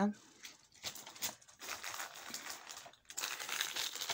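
Packaging crinkling and rustling as it is handled, a run of irregular small crackles that softens to a light rustle near the end.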